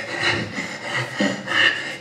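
A man's short, quick, audible breaths into a lapel microphone, about four puffs in two seconds, acting out the shortened breathing of a stiff chest and being out of breath.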